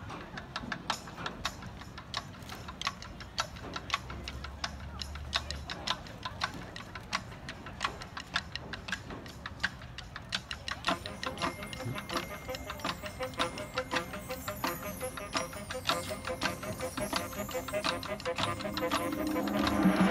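Marching band show opening quietly on a quick, even ticking from the percussion. Held tones join about halfway through, and the music swells near the end.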